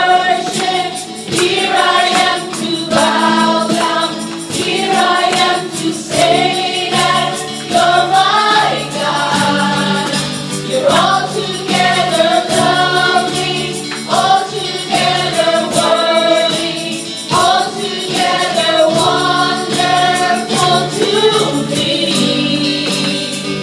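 Live gospel worship song: a small group of women singing together in phrases of a few seconds each, accompanied by strummed acoustic guitars and keyboard.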